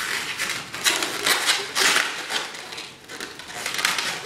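Latex twisting balloons rubbing against each other and against hands as they are twisted and interlocked: a run of irregular scratchy rubs, loudest about two seconds in.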